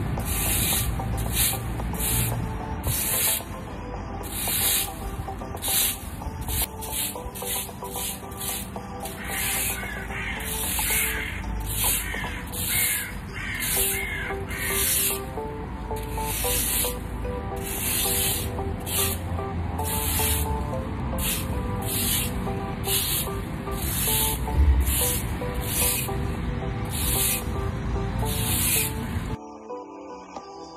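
Plastic fan rake scraping across gravel in quick, regular strokes, about one to two a second, over background music. The strokes stop just before the end.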